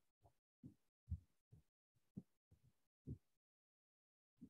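Near silence broken by an irregular run of short, faint low thumps, two or three a second.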